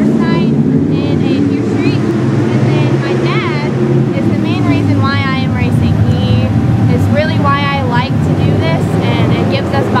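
Race car engines running at a dirt track, a steady loud low rumble under a woman's voice.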